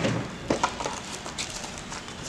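A few light knocks and clicks from trailer hub and bearing parts being handled and set on a tabletop, a small cluster about half a second in and another near the middle.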